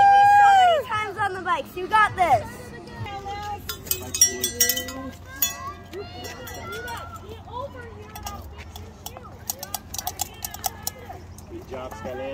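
Spectators cheering: a loud, long, high 'woo' at the start, followed by shorter shouts of encouragement and scattered voices over a steady low background hum.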